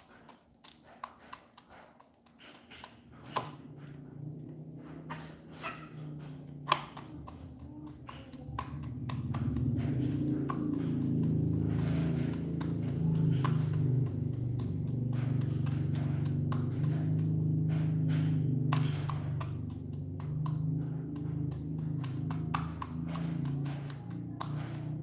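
H'mông black chicken pecking feed from a clear plastic cup: irregular sharp beak taps and clicks on the plastic, with two louder taps a few seconds in. A low steady drone builds underneath and is the loudest sound from about a third of the way through.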